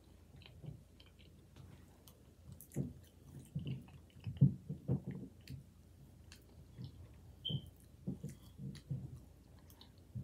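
A person chewing food close to the microphone. It is quiet at first, then comes an irregular run of chewing sounds from about three seconds in, loudest near the middle.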